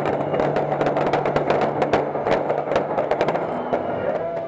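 A rapid, dense string of sharp pops and crackles from Fallas-style firecrackers going off, over background music.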